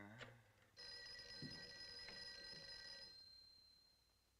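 A telephone bell rings once, starting about a second in and lasting a little over two seconds. One high tone is left fading away after the ringing stops. It is an incoming call ringing through.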